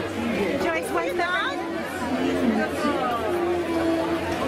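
Several people talking and calling out over one another, with music playing underneath.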